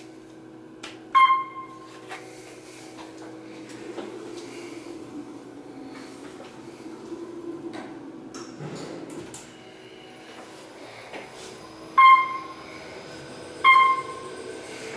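Otis Series 1 traction elevator car riding down, with a steady hum and travel rumble heard inside the car. A short electronic beep sounds about a second in and two more near the end.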